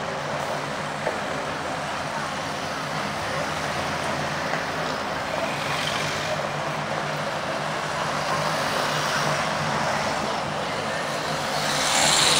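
Busy city street: steady road traffic noise from passing cars and double-decker buses, with passersby talking.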